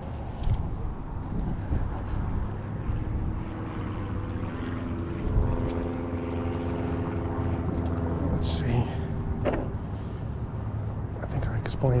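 A distant engine hums steadily in the middle, building and then fading away, over a low rumble of wind on the microphone.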